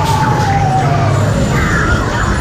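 Haunted-maze soundtrack: a single high tone that slides slowly down in pitch for about a second and a half, over a steady low rumble.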